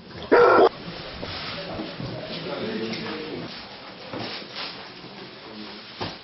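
A large dog barks once, loudly and briefly, about half a second in.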